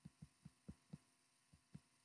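Near silence with about six faint, soft, irregular taps, mostly in the first second: a stylus tapping and stroking on a tablet screen while handwriting.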